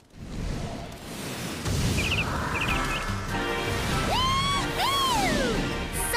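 Cartoon soundtrack: a rushing whoosh swells in, then small cartoon birds chirp in two quick bursts about two seconds in. Music comes in after that, with two long sliding whistle-like tones, the second rising and then falling.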